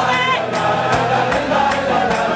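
A crowd of men singing a Hasidic niggun together, led by a singer on a microphone, with strummed acoustic guitars. A steady beat comes about every half second or a little faster.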